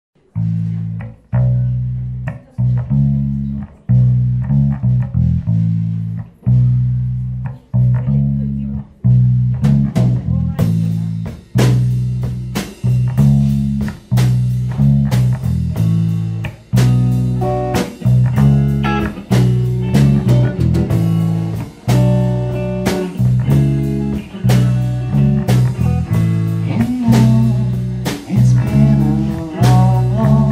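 Live blues-rock band playing a song's instrumental intro. A low, repeated bass guitar riff plays alone for about ten seconds, then drums with cymbals and electric guitar come in and the full band plays on.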